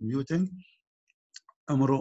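A man's voice lecturing, breaking off about half a second in and resuming shortly before the end, with a couple of faint short clicks in the pause.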